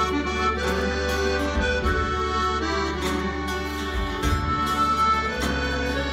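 Live folk band playing an instrumental passage, the accordion carrying the melody over acoustic guitar, fiddle, double bass and sousaphone, with regular drum hits keeping time.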